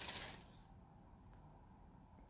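A Bible page being turned: a brief papery rustle of about half a second right at the start.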